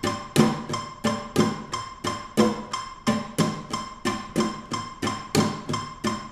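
Nylon-string flamenco guitar strummed in even strokes, about three a second, keeping time with an electronic metronome beeping at 180 BPM. Each stroke is one movement of the flamenco triplet (abanico) played one per beat, the same speed as triplets at 60 BPM.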